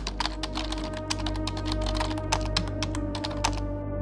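Computer keyboard typing sound effect: rapid, irregular key clicks that stop shortly before the end, over a steady, low ambient music drone.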